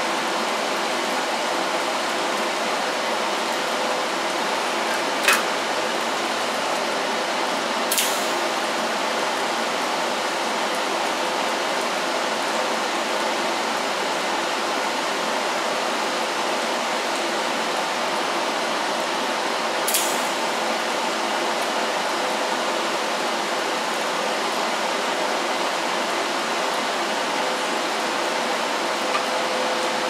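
TIG welding arc hissing steadily while a handle is welded to a steel door, with three sharp pops along the way.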